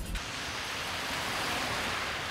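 Steady hiss of car tyres on a wet road as traffic passes.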